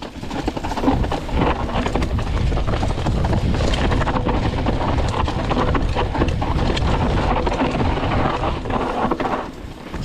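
Mountain bike riding fast down a rough dirt trail: wind rumbling on the microphone, with the tyres rolling over dirt and the bike rattling and knocking over bumps. The noise eases off briefly near the end.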